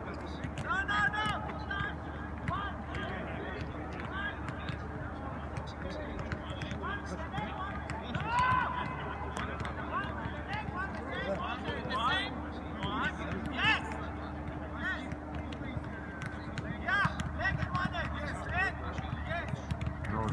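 Football players calling and shouting to each other across an open pitch during a ball-juggling and heading drill, with scattered sharp taps of balls being kicked and headed, over a steady low hum.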